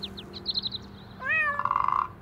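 Cartoon sound effects: a quick run of short, high, falling chirps, then a cat's meow a little over a second in that rises in pitch, levels off into a buzzy held note and stops abruptly.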